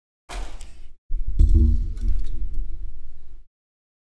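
Handling noise as a laptop's case and bare motherboard are picked up and moved over a silicone work mat: two stretches of rumbling, scraping clatter with one sharp knock about a second and a half in and a few lighter clicks.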